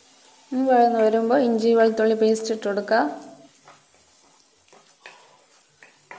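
A voice speaks for about two and a half seconds, then a wooden spatula scrapes and stirs spiced masala frying in oil in a non-stick pan, with a light sizzle.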